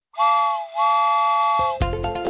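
Train whistle sounding two toots, a short one and then a longer one, each a chord of several steady tones. Music starts just before the end.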